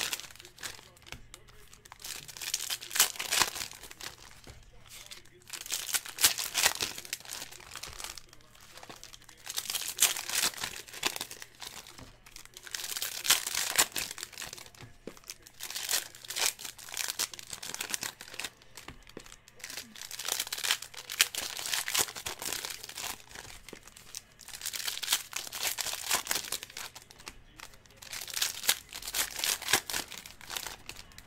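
Foil Panini Prizm baseball card pack wrappers being torn open and crinkled, in crackly bursts every two to three seconds as pack after pack is opened.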